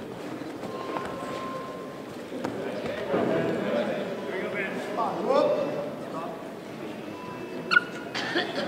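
Indistinct voices calling out in a gymnasium during a grappling match, rising and falling in pitch and loudest in the middle, with a sharp click near the end.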